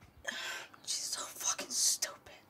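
A person's whispered, breathy voice, ending in a strong hiss near the end.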